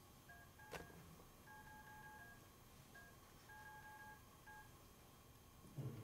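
Faint beeps from a phone's Google Keyboard Morse code input as dots and dashes are tapped on its two keys: a string of short and long beeps with pauses between them, heard through the phone's small speaker.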